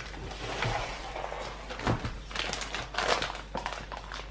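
Crunching of a freshly fried spring roll being chewed: irregular crisp crackles among a dry rustle.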